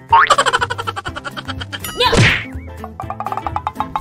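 Cartoon comedy sound effects: a rising boing, a fast trill of pitched pulses, a loud whack with a falling swish about two seconds in, then another quick trill.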